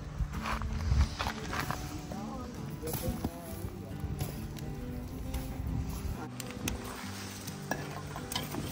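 Whole tomatoes set on glowing wood embers to roast, sizzling, with scattered small clicks and crackles from the coals. A soft background music bed runs underneath.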